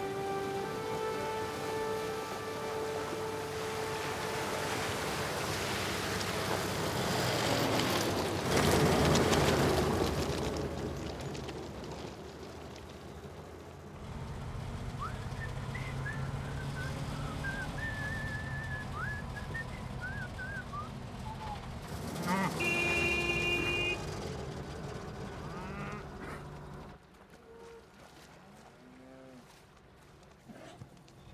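Soundtrack music fades into an old truck splashing through a river ford, with a loud rush of water about 9 seconds in. Its engine then runs steadily while a man whistles a tune, and a horn honks briefly about three quarters of the way through.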